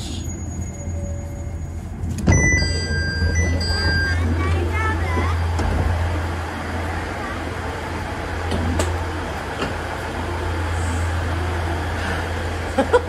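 Diesel railcar idling at a station with a steady low hum. About two seconds in there is a thud, followed by a two-tone electronic chime lasting a second and a half, typical of a train door opening.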